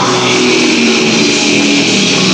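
Rock band playing live, electric guitar and drums, loud and steady.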